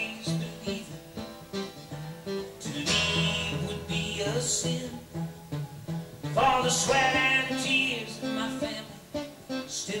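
Live country band playing a song, led by a strummed acoustic guitar, with a melody line sliding over it.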